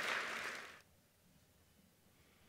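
Audience applause dying away and cutting off abruptly under a second in, followed by near silence.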